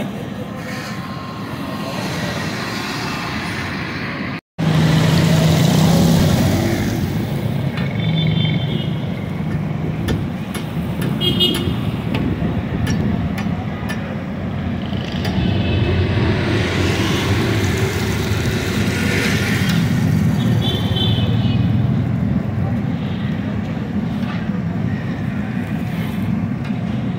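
Roadside street traffic: a steady wash of passing vehicles with a few short horn toots, and voices in the background.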